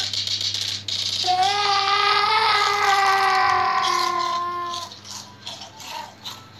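Rapid rattling shakes, then a baby's single long crying wail from about a second in until nearly five seconds, sinking slightly in pitch before it fades.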